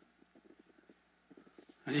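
A near-quiet pause between a man's sentences, with faint low crackling ticks; his voice comes back in near the end.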